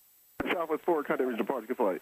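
Speech only: an air traffic control radio call heard through the headset audio, thin and cut off above the voice range, opening with a key click about half a second in.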